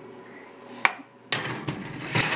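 A metal baking pan knocking against the oven's wire rack as it is handled at the open oven: one sharp clink a little before the middle, then a short clatter of metal with a few knocks near the end.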